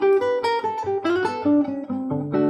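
Nylon-string classical guitar played fingerstyle: a quick melodic run of single plucked notes.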